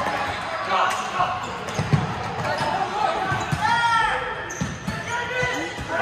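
Futsal ball thudding on a hardwood indoor court as it is kicked and bounced, the sharpest thud about two seconds in. Players and onlookers call out, echoing in a large gym.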